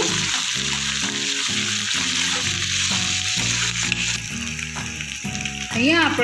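Chopped onion, garlic and ginger-chili paste sizzling as they fry in hot oil in a steel pan, stirred with a spoon, a steady hiss that eases a little about two-thirds of the way through. Soft instrumental background music plays underneath.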